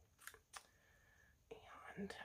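Near silence with two faint clicks early on, then a soft breath-like hiss near the end.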